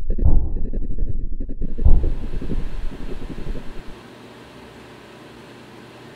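Two deep booming hits about a second and a half apart, then a rush of hiss that dies down to a low, steady hiss.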